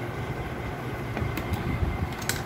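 Steady low background rumble with a few faint clicks and taps of plastic fuser-unit parts being handled about a second and a half in.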